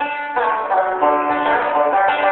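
Bluegrass string band of banjo, acoustic guitar, mandolin and upright bass starting a tune: the music begins suddenly and fills out to the full band about a third of a second in, then plays on steadily with the banjo prominent.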